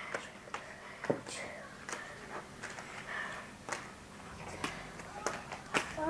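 Plastic disc cones clicking as they are picked up and stacked one onto another: about a dozen sharp, irregular clicks, the loudest near the end.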